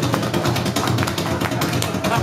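A lively accordion tune played at a quick, even beat, with rhythmic tapping on the floor.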